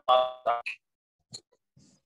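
A man's short laugh over a phone video call, then the call audio drops out to dead silence for over a second.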